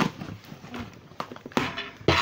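A few short knocks and handling noises, the loudest about one and a half seconds in.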